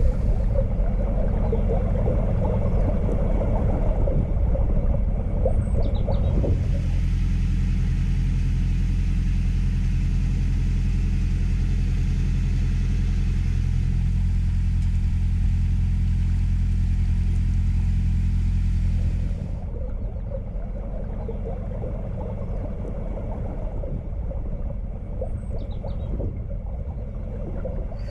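A narrowboat's inboard engine running steadily at cruising speed, a low even rumble. From about six seconds in until about two-thirds of the way through it is a little louder, with a steady hiss over it.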